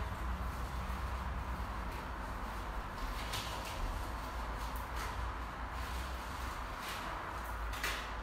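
Steady low hum and hiss of room tone, with a few faint rustles and soft bumps of a person shifting on an exercise mat and handling a fabric resistance band.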